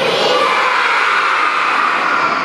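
A crowd of children shouting an answer together, a loud mass of many voices at once, replying to a question they were just asked.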